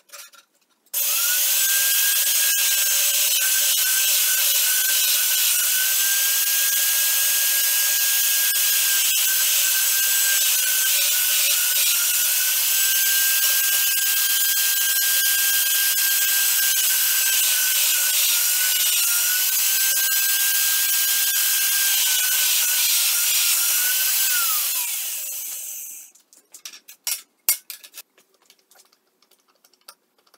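Magnetic drill press drilling through an aluminium plate: a steady motor whine over the bit's cutting noise, the pitch dipping slightly at times under load. After about 24 seconds the motor is switched off and winds down with a falling whine.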